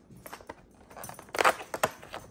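Cardboard door of an advent calendar being pried and torn open: a few small clicks, then a short burst of crackling and tearing about one and a half seconds in, with one more sharp crack just after.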